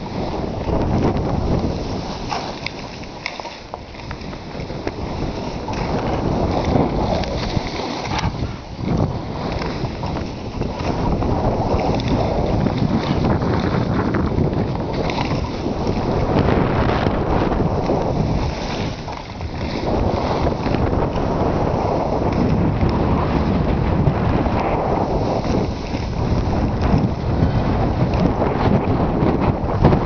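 Wind rushing over the microphone of a camera carried by a skier on a downhill run, a loud noise that swells and eases, mixed with the hiss of skis moving through powder snow.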